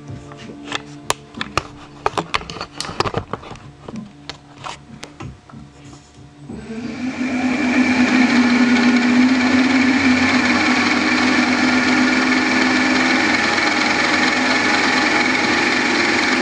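Several sharp clicks and knocks, then about six and a half seconds in a small milling machine's spindle motor starts and comes up to a steady hum with a higher whine. It spins the homemade gear cutter freely, just before the first tooth is cut.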